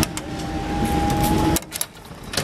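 Two Class 37 diesel locomotives with English Electric V12 engines pulling away, a steady engine drone with a held whistle-like tone that drops away sharply about a second and a half in.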